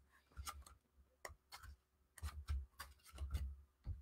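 Faint, scattered clicks and light knocks from small photo books being handled and sorted through.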